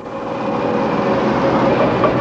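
Steady vehicle noise: a rushing hiss with a faint steady whine, fading in over the first half second.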